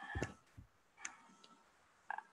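A soft thump and two faint clicks, one near the start and one about a second in, then near quiet.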